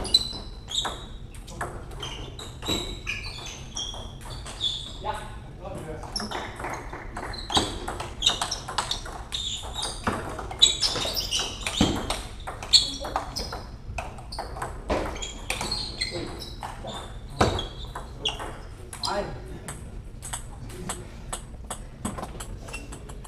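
Table tennis ball being hit back and forth in play: a quick, irregular series of sharp clicks as the ball strikes the bats and bounces on the table.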